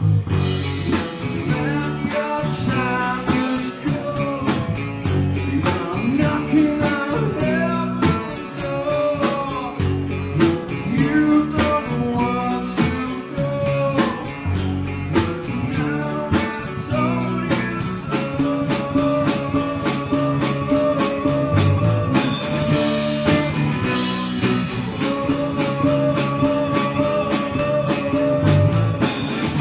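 Live rock band playing: acoustic guitar, lead electric guitar, bass guitar and drum kit, with a steady drum beat and sung vocals.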